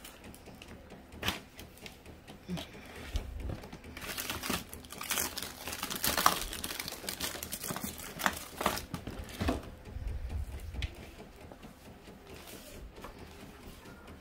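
Inkjet printer printing a sublimation transfer fed from the rear tray: irregular clicks and rattles of the paper feed and print carriage, busiest through the middle, with a couple of low rumbles.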